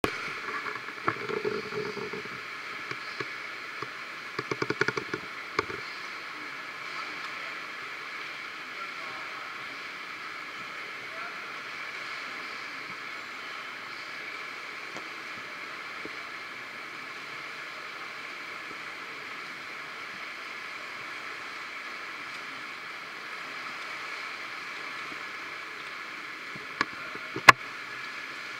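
Indoor swimming pool ambience: a steady wash of splashing water from freestyle swimmers, echoing in the pool hall. Louder bursts come in the first few seconds, and there is one sharp knock near the end.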